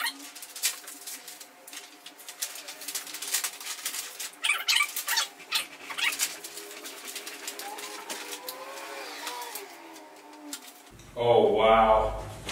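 Stiff paper movie posters rustling and crackling in quick bursts as they are handled and flipped through, over a faint steady hum.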